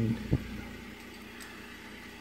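A single short knock about a third of a second in, handling noise from the phone-mounted scope being moved, over a steady low background hum.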